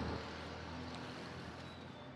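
A motor vehicle's engine running and gradually fading as it moves away, over light street noise.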